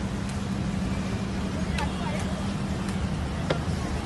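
A car's engine running at idle close by: a steady low hum under faint voices, with two sharp clicks, one about two seconds in and one near the end.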